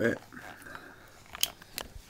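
Two sharp clicks about a third of a second apart: a wall light switch being flicked to turn the room lights off.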